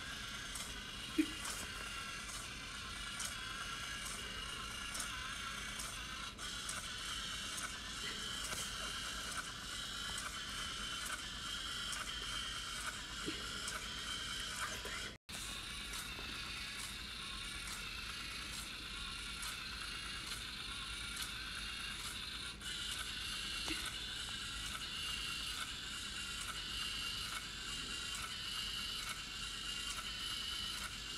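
LEGO Mindstorms EV3 walking robot's single motor running steadily with a whine, its gearing and plastic feet clicking and tapping on a wooden floor about twice a second as it walks. The sound breaks off for a moment about halfway through.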